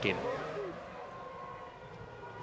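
Faint, high, thin whine of a distant Formula One car's V8 engine at high revs over steady trackside background noise, after a man's voice trails off.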